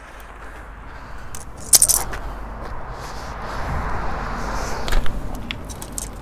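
Handling noise from a folding rule being readied and laid on asphalt: rustling and scraping with a few sharp clicks, the loudest about two seconds in, and a rush of noise through the middle.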